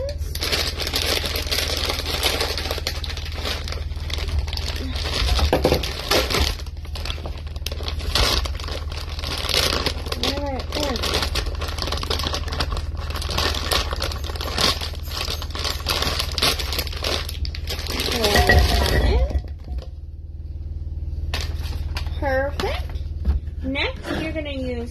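A plastic food bag crinkling and rustling as it is torn open and meatballs are emptied from it into a slow cooker's crock. The crinkling stops about twenty seconds in.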